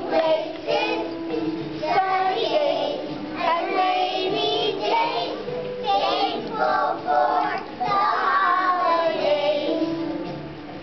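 Young children singing together as a group.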